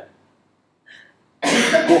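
A man coughs once, loudly and sharply, about one and a half seconds in, after a short silence.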